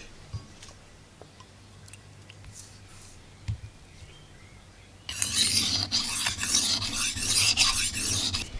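Steel knife blade stroked across a wet 500-grit Japanese whetstone while being sharpened: a gritty scraping that starts about five seconds in and keeps going.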